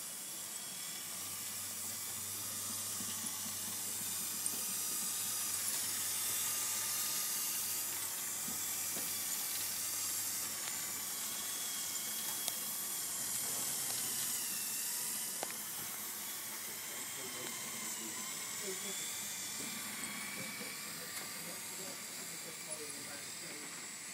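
Meccano model carousel running under its small electric motor: a steady hissing whir of motor and gearing with a few light clicks, swelling slowly and then easing off.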